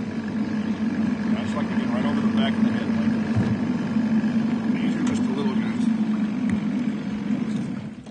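Small outboard motor running steadily at a low, even speed, with faint voices over it.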